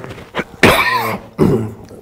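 A man coughing: a loud cough about half a second in, followed by a shorter one.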